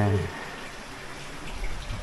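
Hot spring water running steadily into a steaming pool, heard as an even hiss of flowing water, with a low bump near the end.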